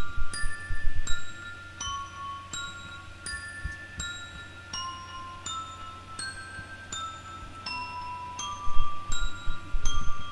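Sampled glockenspiel (a Nami One Shot Kit one-shot) playing an arpeggiated melody in FL Studio, one bell-like note about every 0.7 seconds, each ringing on. A few low thumps sit underneath near the start and the end.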